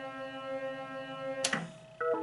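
Hokuto no Ken pachislot machine playing its steady background music, with one sharp click about one and a half seconds in as the last reel is stopped. The music then drops away.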